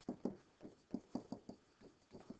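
A pen writing by hand on a writing surface, heard as a quick series of faint taps and scratches, several to the second, one for each letter stroke.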